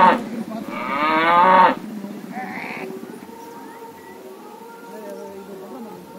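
Gaur (Indian bison) lowing: two long moos in the first two seconds, the second about a second long and cut off abruptly, followed by quieter background sound.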